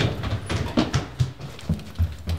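Quick footsteps, about three a second, climbing stairs and moving along a carpeted hallway.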